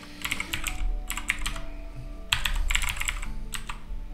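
Typing on a computer keyboard: two quick runs of keystrokes, with a short pause about two seconds in.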